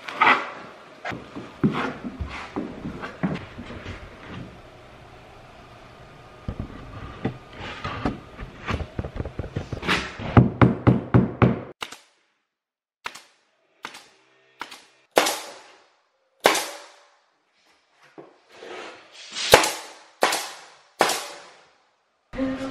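A notched trowel scraping and spreading flooring adhesive over the subfloor, with short knocks and scrapes. About halfway through come the sharp single shots of a pneumatic flooring nailer, each followed by a short hiss, about eight in all, with silent gaps between them.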